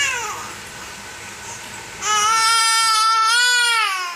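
A baby's voice: a short falling call at the start, then about two seconds in a long, loud, high-pitched drawn-out cry that holds steady and bends down as it ends.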